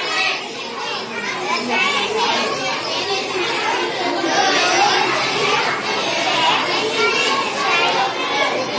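Many schoolgirls' voices talking at once, a steady overlapping chatter with no single voice standing out.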